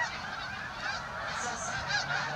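A large flock of geese flying overhead, many birds honking at once in a dense, overlapping chorus.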